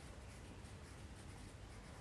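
Faint scratching of a pencil writing a word on a paper textbook page.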